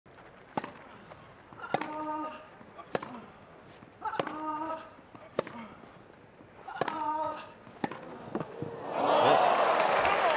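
Tennis rally on grass: sharp racket strikes on the ball about every second and a quarter, three of them with a short player's grunt. Near the end the crowd breaks into applause and cheers as the point is won.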